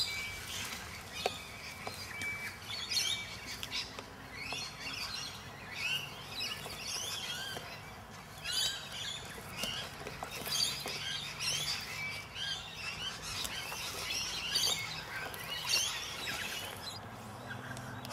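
Birds chirping: many short, quick calls that rise and fall in pitch, repeating throughout, over a faint steady low hum.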